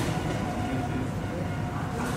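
Steady low rumble of outdoor street background, with a single click right at the start.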